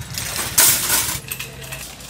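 Metal wire shopping cart rattling and jingling as it is pushed along, loudest just over half a second in, then easing off.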